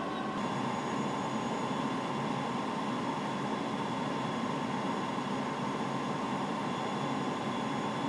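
Steady cockpit noise of an airliner on final approach: a constant rushing hum of airflow and engines, with faint steady tones, unchanging throughout.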